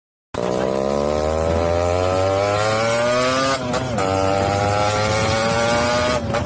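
An engine running with a steady pitched drone that rises slowly in pitch, briefly dipping and breaking off about three and a half seconds in, then rising again.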